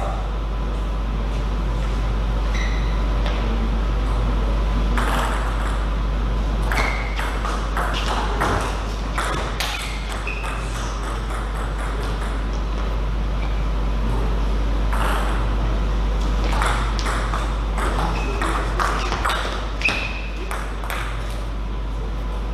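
Table tennis rallies: the ball clicks back and forth between the paddles and the table in two exchanges, one about 5–10 seconds in and one about 15–20 seconds in, with a few short squeaks among them. A steady low hum runs underneath.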